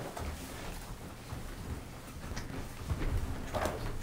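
Low room noise of a group of people shuffling about, with a few faint knocks and clicks.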